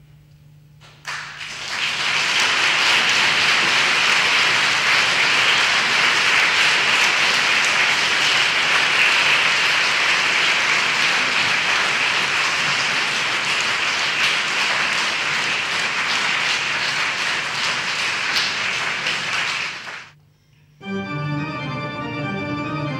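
Audience applauding for about twenty seconds. The applause cuts off abruptly, and near the end a pipe organ begins playing.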